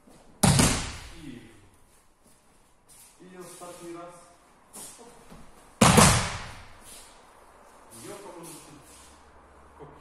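Two heavy thuds of a body landing in an aikido breakfall on dojo floor mats, one just under half a second in and another a little before six seconds, each with a short ringing tail in the hall.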